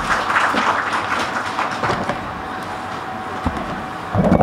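Audience applauding, the clapping thinning out over the second half.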